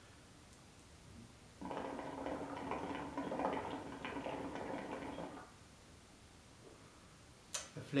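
Water bubbling in the glass base of an Elmas Nargile 632 Turkish narghile as a long draw is pulled through the hose: a steady gurgle of about four seconds, starting about one and a half seconds in.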